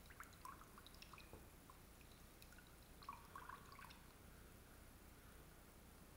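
Faint drips and small splashes of water as a conductivity pen's sensor tip is rinsed in a bowl of water and lifted out: a few light ticks in the first second or so and a short patter about three seconds in.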